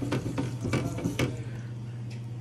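Drinking fountain's bubbler running on its own, a steady stream of water splashing into the stainless steel basin, with a constant low hum underneath and a few sharp ticks in the first second. The fountain is stuck on: its push buttons add water but won't shut it off.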